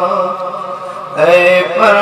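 A man's voice chanting through a microphone and loudspeakers in long held notes with a wavering pitch, falling softer and then starting a new, louder phrase a little past a second in.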